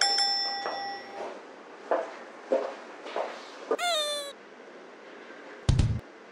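A bell-like ding rings out and fades over about a second, followed by a few short soft blips and a single meow-like cat call. Near the end, loud drum beats start up.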